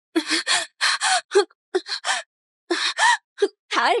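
A woman gasping and panting in short, hard breaths as she struggles against being held, ending in a cry of 'let me go' near the end.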